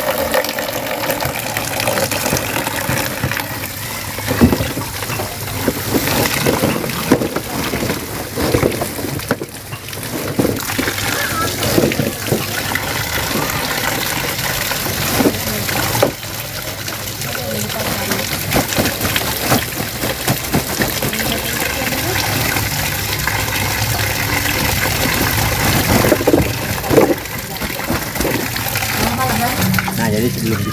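Water running in a steady stream from a tap on a plastic drum and splashing into a basin while sugarcane stalks are washed under it. The stalks knock against each other and the basin now and then.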